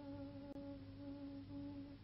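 A woman's voice holding the soft, steady final note of a Kabyle Berber millstone-grinding song. The note breaks briefly about one and a half seconds in, resumes, and stops just before the end.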